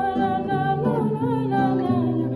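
Young female voices humming or singing a wordless, gliding melody over an acoustic guitar that sustains its chords.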